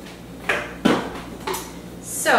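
Three short knocks and clatters of things being handled and set down on a stone kitchen countertop, the second, about a second in, the loudest.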